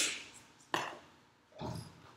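Three short knocks and clacks, about three quarters of a second apart and the last one duller and heavier, from whiteboard markers and an eraser being handled and set down at the board.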